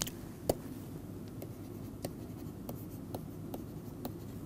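Pen stylus tapping and scratching on a tablet screen while handwriting is inked onto a slide: a handful of short, faint clicks over a steady low hum.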